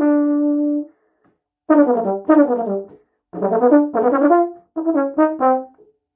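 Solo euphonium playing: a held note that ends about a second in, then after a pause three short runs of quick notes separated by brief gaps.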